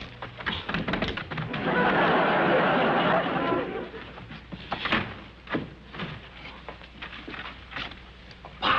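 Vines and leaves rustling hard for about two seconds, as if a climbing plant is being shaken, followed by a few scattered knocks and softer rustles.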